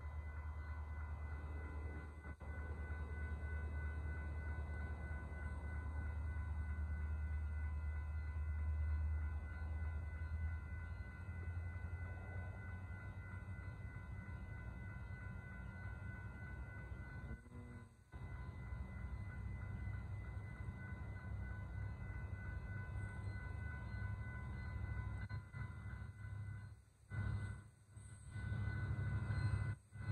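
Railroad grade-crossing bell ringing steadily over the low rumble of a Union Pacific freight train at the crossing; the rumble is strongest in the first ten seconds.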